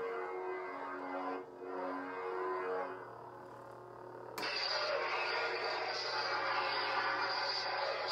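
Proffie-board Neopixel lightsaber (Crimson Dawn Shrike) playing its sound font through the hilt speaker: a pitched hum whose tones shift as the blade swings, then about four seconds in a sudden loud crackling buzz that holds steady for about four seconds.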